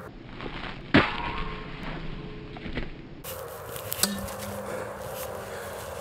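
A sharp knock about a second in, and a smaller knock about four seconds in followed by a brief low hum, over quiet outdoor background.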